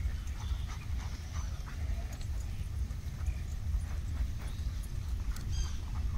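A dog moving and sniffing about on grass, with faint scattered clicks and rustles, over a steady low rumble.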